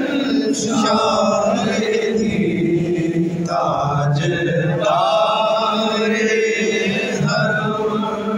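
A man's voice chanting a devotional salam in long, drawn-out melodic phrases, with no instruments.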